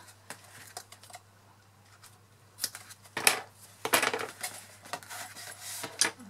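Double-sided adhesive tape (Tear & Tape) being pulled off its roll, torn by hand and pressed onto cardstock: quiet handling, then a few short scratchy rips, the loudest about three and four seconds in.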